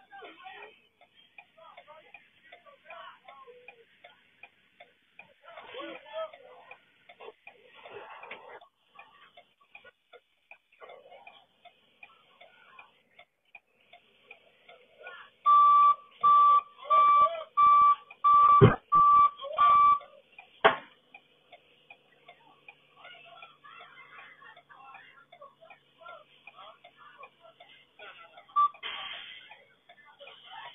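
An electronic warning beeper gives about eight loud, evenly spaced beeps in a row, a little past the middle, followed by a single sharp click; otherwise only faint voices and background noise.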